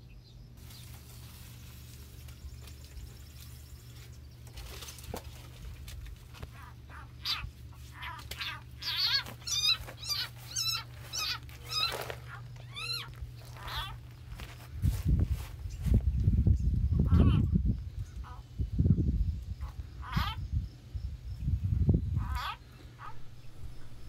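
A bird chirps repeatedly, short curved calls about one to two a second, over a steady low hum. In the second half this gives way to several seconds of low rumbling on the microphone.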